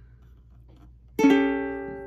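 A ukulele chord strummed once about a second in, its notes ringing and slowly fading.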